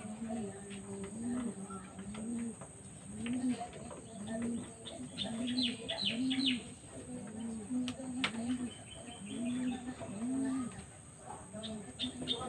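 Birds calling: a steady series of low, arched coos, about one a second, with quick runs of high chirps from smaller birds around the middle and again near the end.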